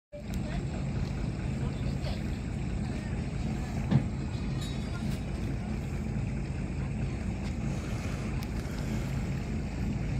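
Boat engine running steadily, heard from on board as a low, even drone, with a single sharp knock about four seconds in.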